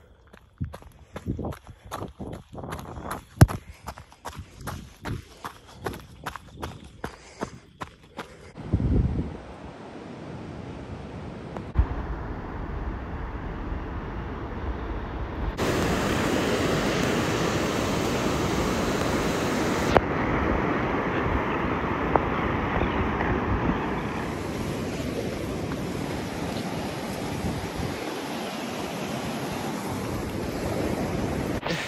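Running footsteps on a gravel path, about two to three strides a second, for the first eight seconds or so. Then steady surf and wind noise, louder for a few seconds in the middle.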